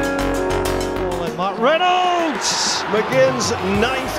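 Background music that cuts off about a second in, followed by a football match commentator's excited, drawn-out calling, his voice swooping up and down in pitch.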